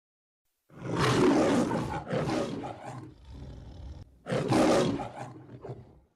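Lion roaring in the manner of the MGM logo roar: two long rough roars back to back, then a third about four seconds in, each loud at the start and trailing off.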